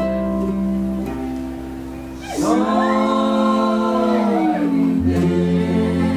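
Acoustic folk band playing on double bass, acoustic guitar, violin and mandolin-family strings. About two seconds in, a sung phrase comes in and is held, sliding down in pitch. Near the end, a deep double-bass note sounds under the strings.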